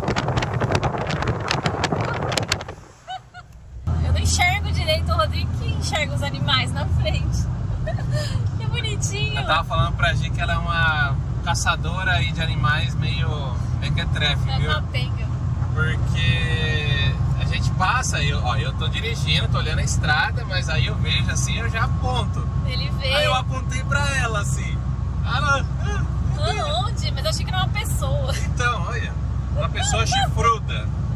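Motorhome driving on the highway: steady road and wind noise at first, then, after a brief drop about three seconds in, a steady low engine and road hum inside the cab with people's voices and laughter over it.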